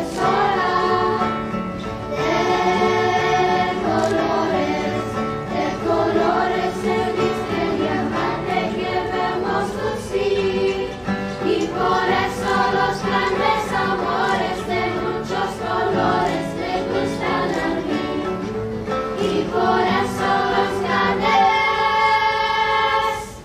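A children's choir singing a piece together in several parts.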